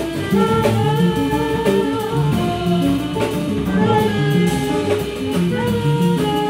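Live jazz band playing: a held, slightly gliding melody line over plucked double bass notes, guitar and drum kit.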